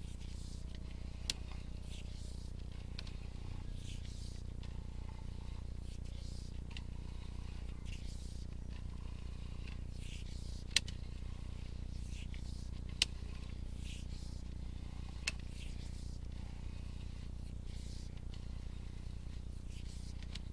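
Sewer inspection camera pushrod being reeled back out of the line, giving scattered light clicks and four sharper ticks over a steady low hum.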